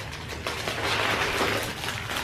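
An aluminum-foil-wrapped cookie tray being slid out of a cardboard box: a continuous rustle of crinkling foil and cardboard scraping.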